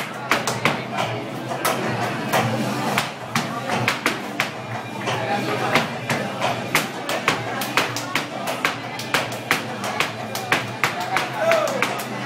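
Flamenco percussion: sharp rhythmic strikes, several a second, over flamenco music and voices.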